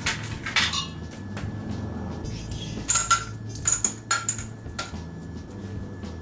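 Pink Starburst candies dropped into stemmed glass martini glasses, clicking and clinking against the glass in a string of short taps, with the sharpest clinks about three and four seconds in.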